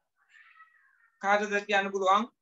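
Three short, loud voiced calls in quick succession, starting a little over a second in, each held at a steady pitch.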